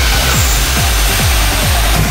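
Electronic dance music with a steady, pounding kick-drum beat, a little over two beats a second.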